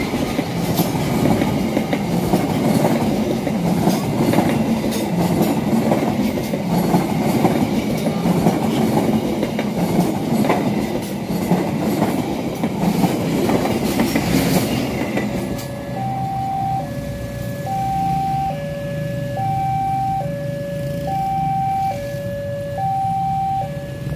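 Train coaches running past close by, their wheels clattering over the rail joints for about fifteen seconds. Then the rolling fades down and a steady two-tone beep takes over, alternating between a high and a low tone, each less than a second long.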